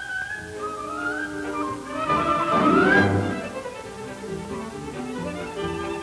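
Orchestral background music led by strings, swelling to its loudest about two to three seconds in.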